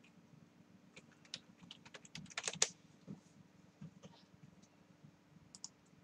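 Typing on a computer keyboard: a run of irregular key clicks that is quickest a little past the middle, then a few scattered taps.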